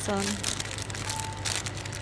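Clear plastic packaging crinkling in the hand as a packaged meat tenderizer is held and turned, a run of short irregular crackles.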